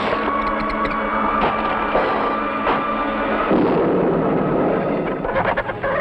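Cartoon crash sound effects over orchestral music as a flying saucer crash-lands: a loud, clattering din with sharp impacts and a heavy rumble about three and a half seconds in. Chickens start squawking near the end.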